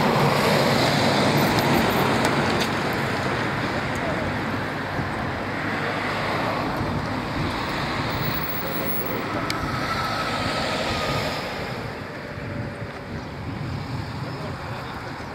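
Steady rushing outdoor noise: wind on the microphone mixed with road traffic noise on a wet highway, easing a little near the end.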